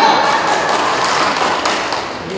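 Audience clapping: a dense patter of hand claps that thins out toward the end.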